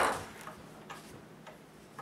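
Wooden spring clothespins being handled as they are counted off the fingers: a sharp click at the start, then two faint ticks about a second apart in a quiet stretch.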